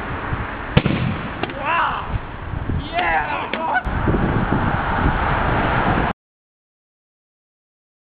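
Steady outdoor noise with a few short calls that slide in pitch, and a sharp click about a second in. The sound cuts out abruptly about six seconds in.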